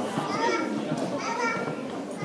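Crowd chatter: many people talking at once, overlapping voices with some high-pitched ones among them.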